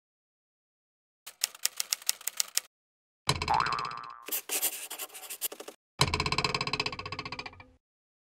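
Cartoon sound effects for an animated logo. A quick run of ticks comes first, then a springy boing whose pitch swoops up and down, and a last twangy sound that fades out.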